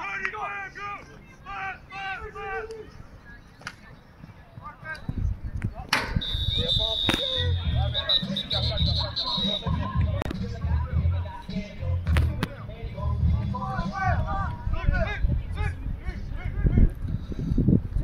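Players and spectators calling out, then about six seconds in a referee's whistle blown in one long, slightly warbling blast of about three and a half seconds, with more shouting near the end.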